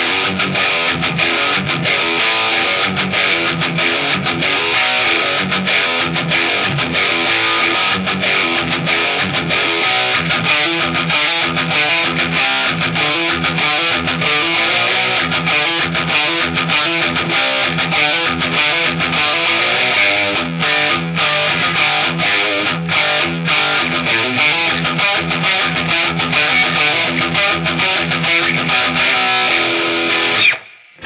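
Heavily distorted electric guitar playing a fast metal riff in a British-flavoured high-gain tone, the notes short and tightly chopped, with a few brief stops about twenty seconds in.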